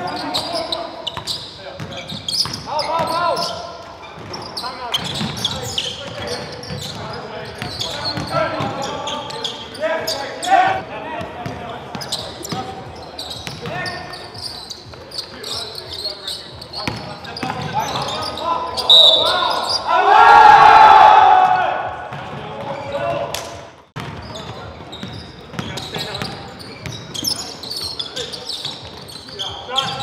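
Basketball game sounds in a gym: the ball bouncing on the hardwood floor amid players' calls and shouts, with a loud burst of voices about twenty seconds in.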